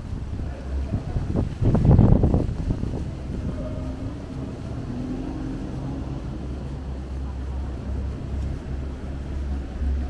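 Wind buffeting the microphone in a gust about two seconds in, then a steady low rumble of city street traffic with a faint engine hum.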